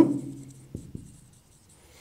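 Marker pen writing on a whiteboard: faint high-pitched strokes, with two light taps a little under a second in.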